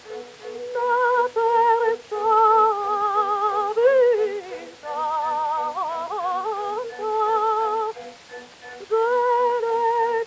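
A mezzo-soprano voice, recorded acoustically on a 1906 78 rpm disc, sings held notes with a wide vibrato. It enters about a second in over a soft accompaniment of evenly repeated chords, and breaks off briefly near the end before going on.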